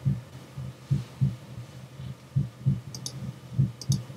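A slow heartbeat: paired low thumps repeating about every second and a quarter. A few short, sharp clicks come about three seconds in and again near the end.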